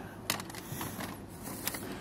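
A few faint clicks and light rustling of grocery packaging being handled in a wire shopping cart, over low steady store background noise.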